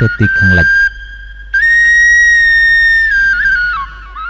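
Background music: a flute melody holding a long high note, then stepping down in pitch near the end.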